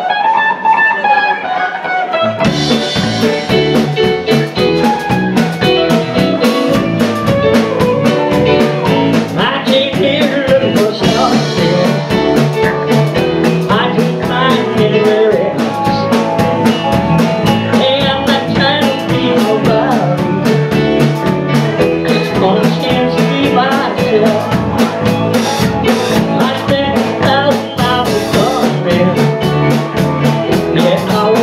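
Live band playing a tune: an electric guitar plays alone at first, then about two seconds in the drums, bass and rest of the band come in together with a steady beat.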